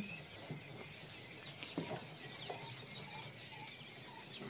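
Faint cheeping of quail chicks in brooder cages, with a few soft clicks and knocks from handling.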